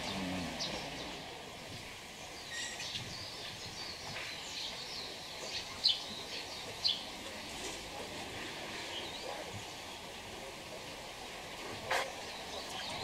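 Small birds chirping in short, scattered calls over steady outdoor background noise, with two louder chirps about six and seven seconds in.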